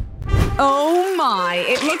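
An edited transition sound effect: a quick whoosh with a low thud at the cut. It is followed by a comic sound effect of sliding, wavering pitches that dip and rise for over a second.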